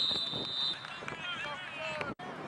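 A referee's whistle gives one short, high, steady blast at the start, blowing the play dead after the tackle. Spectators' voices shout and call over it and after it.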